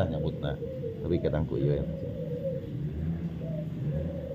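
Short, indistinct voice sounds at the start and again about a second in, over a steady low hum.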